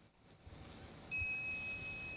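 A single bright chime about a second in, ringing on one high tone and slowly fading. It is the audiobook's cue sound marking an additional note to the text.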